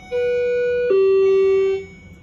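Hydraulic elevator's electronic two-tone chime: a higher note followed by a lower note, each held just under a second, loud and clean.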